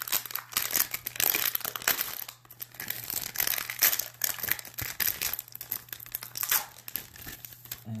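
Crinkling of a 2016 Topps baseball card pack wrapper being handled and pulled apart, in irregular crackles with a short lull about two and a half seconds in.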